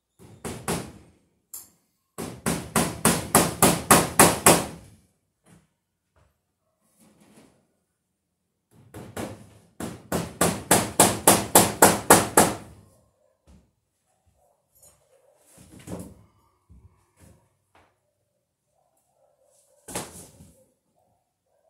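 Hammer blows on the wooden wall framing in two quick runs of about a dozen strikes each, roughly four a second, the blows growing louder through each run, with a few scattered knocks between.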